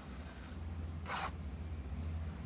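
A single short scratch of a pen stroke across paper, about a second in, over a steady low hum.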